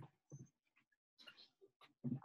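Near silence, with a few faint, short sounds.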